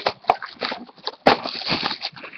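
Cardboard trading-card box being lifted and turned over by hand on a table: irregular scraping and light knocks, with a sharp click right at the start and another about a second and a quarter in.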